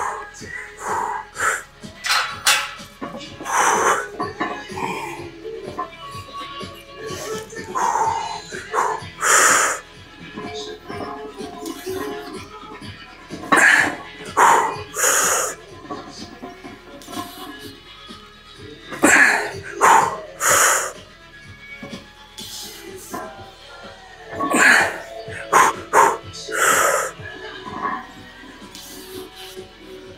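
A weightlifter's forceful breaths and grunts during a heavy set of barbell back squats, coming every few seconds and bunching into quicker clusters in the second half as the reps grind toward failure. Background music plays throughout.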